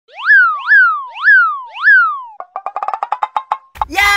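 Cartoon comedy sound effects: four quick boing-like glides, each rising sharply and sliding back down, then a fast rattling run of clicks, about a dozen a second.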